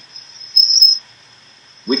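Steady high-pitched whine in the call audio that flares into a loud, shrill squeal about half a second in and lasts about half a second: part of the audio fault the call is suffering from.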